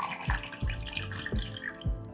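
A shaken cocktail double-strained from a shaker tin through a fine-mesh strainer into a glass over a block of ice: a thin stream of liquid trickling and splashing into the glass, over background music with a soft beat.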